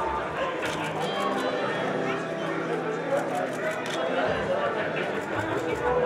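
Indistinct chatter of several voices talking over one another, with faint music underneath.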